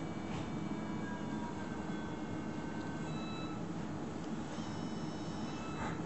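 Steady hum and hiss of operating-room equipment, with a few faint thin high tones coming and going.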